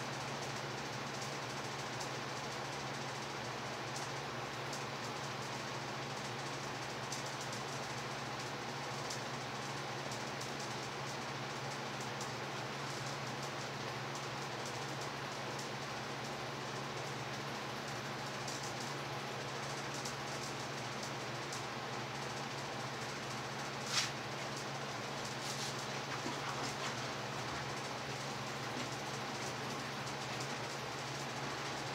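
Steady whir of room fans and an air conditioner running, with a constant low hum. One sharp click about four-fifths of the way through.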